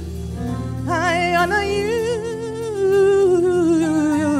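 A woman singing a slow gospel worship song into a microphone: long held notes with vibrato, the line sliding down in pitch near the end, over sustained instrumental chords.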